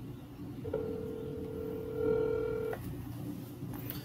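Ringback tone of an outgoing phone call played over a phone's speaker: one steady ring of about two seconds, starting just under a second in.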